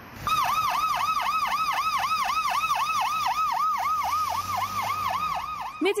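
Ambulance siren in a fast yelp, its pitch sweeping up and down about five times a second.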